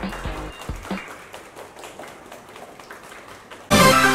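Light applause from a small group, fading away over a few seconds, then loud electronic music starts suddenly near the end as a programme transition sting.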